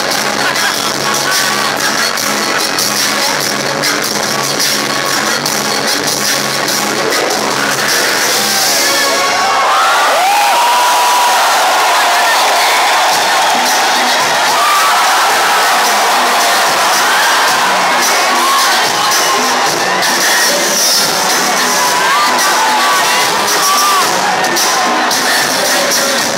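Loud live pop music with a steady bass line, heard from within the audience; about eight seconds in the bass drops out and a large crowd screams and cheers over what is left of the music.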